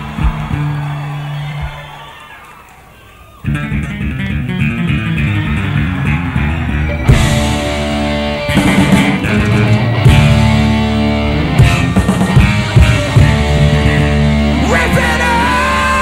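A heavy metal band playing live. Low held notes fade into a brief lull, then a fast guitar riff starts abruptly about three and a half seconds in. The full band, with drums and cymbals, comes in loud about seven seconds in.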